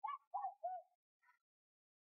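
A bird calling faintly: three short, quick, slightly falling notes, then a fainter fourth about a second in.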